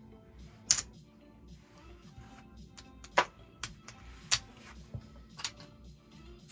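Playing cards and a casino chip being picked up off a blackjack table's felt: half a dozen sharp clicks, spread over the few seconds. Quiet background music underneath.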